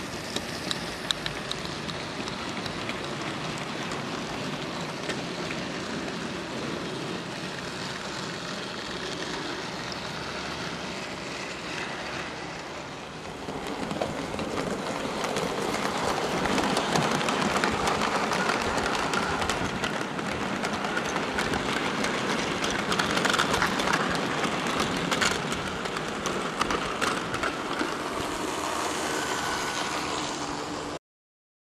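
00 gauge model locomotives running on the layout track: the steady whirr of the running trains with many small clicks of wheels on rail, louder from about halfway through.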